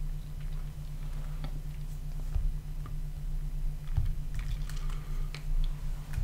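Faint clicks of a computer keyboard over a steady low electrical hum on the microphone line.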